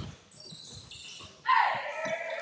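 A basketball dribbled on a hardwood gym floor, its bounces thudding and echoing in a large hall. A loud voice calls out about one and a half seconds in.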